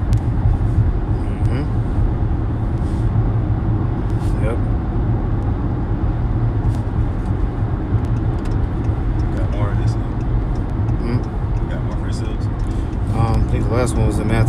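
A steady low rumble with a hiss over it, and faint, indistinct voices about ten seconds in and again near the end.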